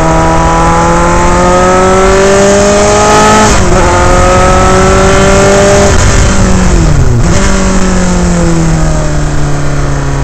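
Dallara Formula 3 car's Alfa Romeo four-cylinder racing engine, heard onboard at speed. The revs climb, drop sharply at an upshift about three and a half seconds in, and climb again. From about six seconds they fall away as the driver lifts, with a quick jump at a downshift near seven seconds, then run lower and slowly falling through the corner.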